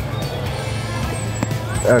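Faint clicks and rustling of hands unfastening and lifting the flap of a canvas camera bag with leather straps and buckles, over a steady low background rumble.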